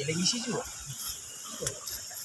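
Cast net and fish being handled on river pebbles: scattered clicks and knocks of stones, with one sharp click near the end, over a steady high hiss.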